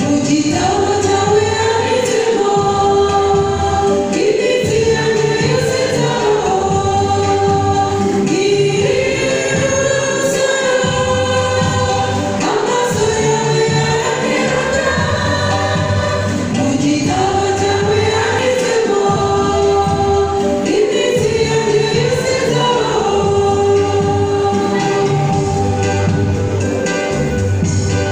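A church choir singing a Kinyarwanda gospel song in repeated phrases of a few seconds each, over steady low accompaniment notes.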